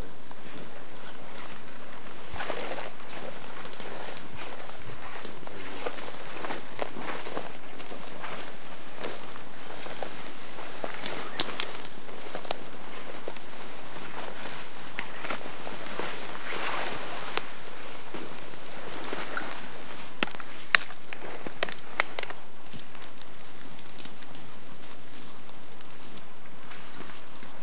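Footsteps pushing through ferns and brush undergrowth, foliage swishing, with scattered sharp cracks of twigs snapping, a few of them near the end, over a steady hiss.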